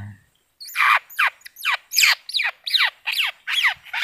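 A bird squawking over and over in sharp, steeply falling calls, about three a second, starting about half a second in. It is the bird being taken from a bamboo basket trap.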